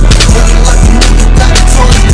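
Hip hop beat with heavy bass and a steady drum pattern.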